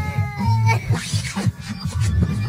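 Background music with a steady beat, overlaid by a high, whining cartoon voice effect that holds a slightly falling pitch and then breaks into short sliding squeaks about a second in.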